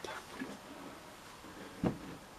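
Faint handling noise as a flat-screen TV panel is lifted from the bench and stood on its edge, with a few light knocks early on; a man says a short "uh" near the end.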